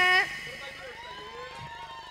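A high voice holding a long sung note that drops off and ends about a quarter-second in. After it, quieter background voices with faint wavering, gliding pitches.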